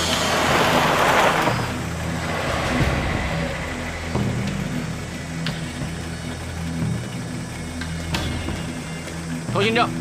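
A vintage military jeep's engine running as it pulls up on a dirt road, louder in the first second or so, then settling into a steady low idle hum.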